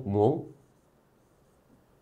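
A man's voice for about half a second, then near silence: room tone.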